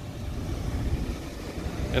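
Low, uneven rumble of wind buffeting the microphone as it is carried around outdoors.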